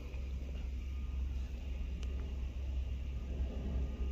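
2018 Nissan Pathfinder's 3.5-litre V6 idling steadily in park, heard from the driver's seat as a low, even rumble, with one faint click about two seconds in.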